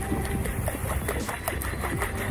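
A small fishing boat's engine running steadily in a low rumble, with light irregular clicks over it.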